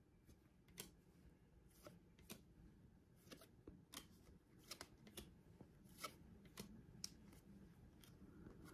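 Faint, soft ticks of baseball trading cards being flipped through by hand, one card sliding off the stack after another, about a dozen at irregular intervals.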